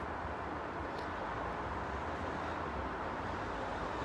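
Steady low background rumble of distant city traffic.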